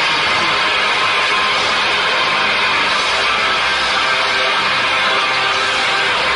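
Loud music playing steadily, the accompaniment to a fire show.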